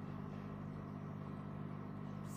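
Steady low background hum with no change.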